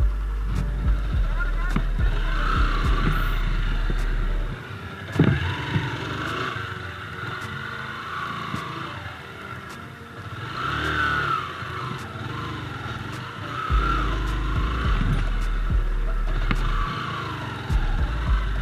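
A Yamaha YBR-G's small single-cylinder engine running on a muddy trail, its pitch rising and falling with the throttle. A low rumble of wind on the microphone covers the first four seconds and returns at about fourteen seconds.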